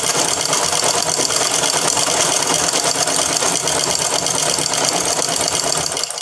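A domestic sewing machine running steadily at speed while stitching fabric, with a fast, even stitching rhythm. It stops abruptly at the end.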